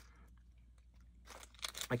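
Faint crinkling and small clicks of a card-and-plastic fishing hook packet being handled, with speech starting near the end.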